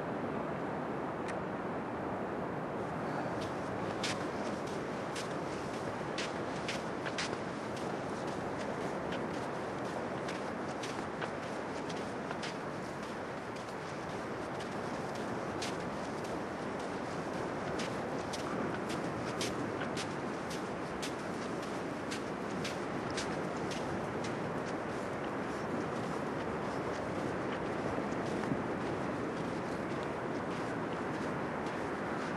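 Steady rushing outdoor noise, with many faint, short clicks scattered through it.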